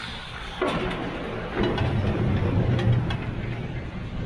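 Chairlift top-station machinery as a chair rides in: a low rumble starting about half a second in, with several clanks as the chair passes over the station's wheels.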